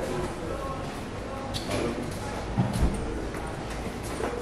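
Gym ambience: indistinct background voices with two dull thuds a little past halfway.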